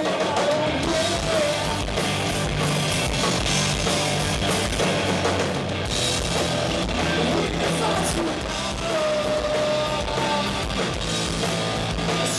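A rock band playing live: two electric guitars, an electric bass and a drum kit, in a dense, continuous full-band mix.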